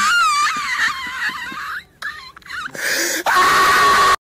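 A girl's high-pitched, wavering squeal, a wail that rises and falls, then broken shorter cries. Near the end, a loud steady hissing buzz with one held tone takes over and cuts off suddenly, as if the audio has glitched.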